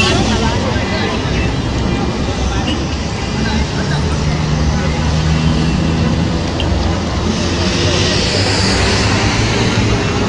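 Busy roadside traffic: minibus and car engines running and passing close by, with a steady engine hum in the middle and a rising rush of a vehicle going past near the end.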